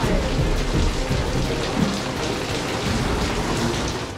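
Angle grinder working on metal and throwing sparks: a steady, harsh rushing noise.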